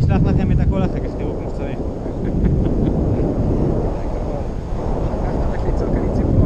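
Loud, steady rush of wind buffeting the camera microphone in flight under a tandem paraglider, with brief voices in the first second.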